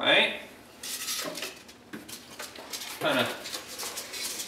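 Styrofoam packing blocks squeaking as they rub against each other and the box while being pulled out of a cardboard shipping box, with crackly rustling and light knocks in between. The loudest squeak comes right at the start, and another about three seconds in.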